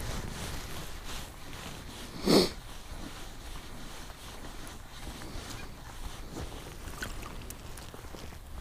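Low wind rumble on the microphone with faint ticking from a spinning reel being cranked to bring in a hooked fish. One short, loud sniff comes about two seconds in.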